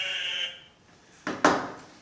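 A steady high tone fades out about half a second in. After a short near-silence, a single sharp knock about one and a half seconds in, as a mobile phone is set down on a wooden table.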